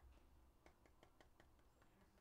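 Near silence, with a handful of faint, light clicks from about half a second to nearly two seconds in: fingers handling a hard plastic card holder.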